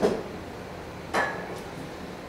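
A single sharp knock with a short fading ring a little past a second in, as something is set down on the bar.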